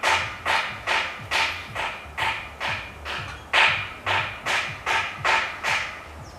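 Rhythmic crunching, evenly spaced at about two and a half strokes a second.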